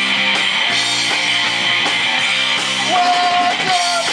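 Live punk rock band, electric guitars and a drum kit, playing loudly in a steady driving rhythm, with one long held note about three seconds in.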